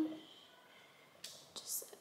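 A woman's voice trails off, then near-quiet room tone. About a second and a quarter in comes a short, soft breathy hiss from her, lasting about half a second.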